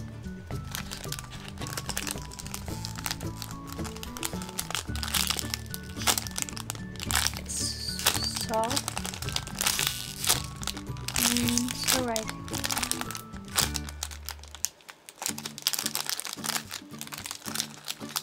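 Clear cellophane bag crinkling and crackling in bursts as hands squeeze a chocolate French cruller squishy through it, over background music.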